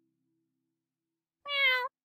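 A single short cat meow near the end, about half a second long, its pitch falling slightly.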